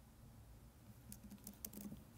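Faint keystrokes on a keyboard: a quick run of several key taps in the second half, typing a short search word.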